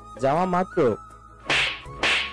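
Two sharp slap sound effects, hands striking a cheek, about a second and a half in and again at the very end, over soft background music.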